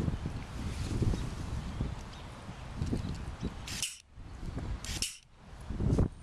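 Wind rumbling on the microphone, with two short sharp hisses near the end: a hydraulic tree-injection gun squirting its measured dose out through the four-point needle tip when the trigger is pulled.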